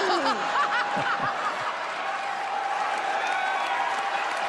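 A studio audience and the judges laughing, over a steady crowd din.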